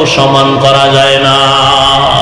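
A man's voice drawn out in one long chanted note, held at a nearly steady pitch: the melodic, sung delivery of a Bangla waz preacher.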